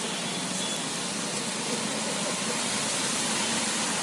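Steady hiss of tyres splashing through water on a flooded road, with vehicle traffic noise.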